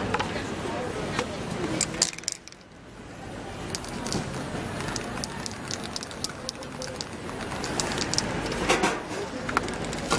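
Outdoor street ambience: indistinct voices of people nearby and scattered sharp clicks and taps. The sound drops away briefly about two seconds in.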